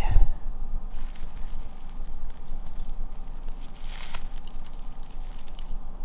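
Dry leaf litter rustling and crackling as a hand lifts and sifts it in a plastic tub, with a soft thump at the start and a sharper crackle about four seconds in.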